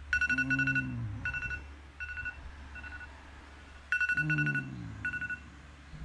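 Electronic beeping in two bursts, each a rapid chatter of beeps followed by a few slower repeats that fade like an echo, with a low falling tone under each burst. A steady low hum runs underneath.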